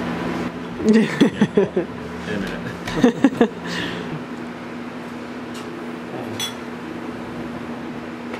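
A steady low machine hum, like a fan, runs under a man's short laughs about a second in and again around three seconds. Later come a couple of light clicks of a utensil against a ceramic bowl.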